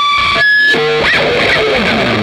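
Single-coil offset electric guitar feeding back through a loud, cranked amp. Long high feedback tones sing over distorted playing; the pitch jumps up about half a second in, then falls back to lower held notes.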